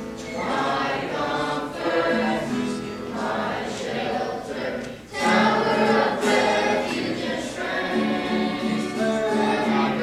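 Church youth group choir singing a worship song together, with a short break between phrases about halfway through before the singing comes back louder.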